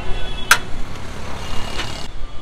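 Steady street traffic noise, with a sharp metal clink about half a second in and a fainter one near the end as a serving spoon strikes metal while biryani is dished out.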